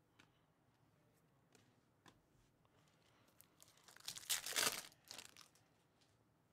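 Trading-card pack wrapper being torn open and crinkled: a burst of tearing about four seconds in and a shorter one just after, after a few faint ticks of cards being handled.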